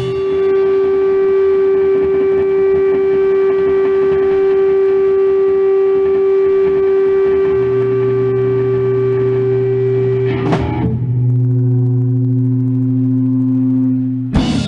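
Amplified, effects-processed drone from a live noise improvisation: one steady held note for about ten seconds, joined by a lower drone about halfway through. About ten seconds in a short noisy swell breaks in, and the held pitches change to a new pair.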